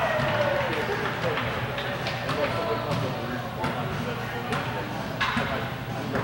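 Indistinct voices talking in a large hall, with a few sharp knocks, the clearest about three and a half and five seconds in.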